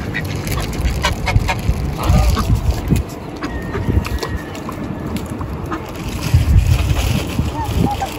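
Ducks quacking over a steady low rumble on the microphone.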